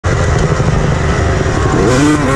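Honda CR250 two-stroke motocross engine running hard at high revs, heard on board; its pitch climbs near the end as the throttle opens.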